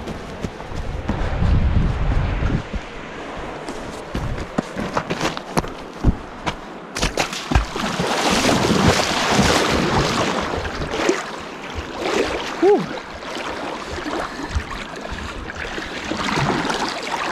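A person wading out through a shallow river: water splashing and swishing around the legs with each step, loudest in the middle stretch, with scattered knocks from handling the camera.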